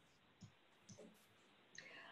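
Near silence, with two faint clicks about half a second and a second in: a computer mouse clicking to advance a presentation slide.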